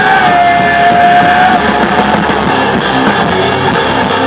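Live hard rock band playing, with electric guitars, bass guitar and drums, loud and dense. One long high note is held for about the first second and a half.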